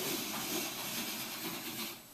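Metal-legged bar stool dragged across carpet: a steady rubbing hiss that stops near the end.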